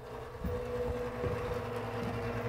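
Blower-door fan running with a steady hum, growing a little louder about half a second in. It is depressurizing the house for an air-leakage test.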